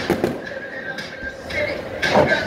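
A few sharp bangs, the first right at the start, a second just after and a third about a second in, echoing around a large stadium over a steady crowd murmur.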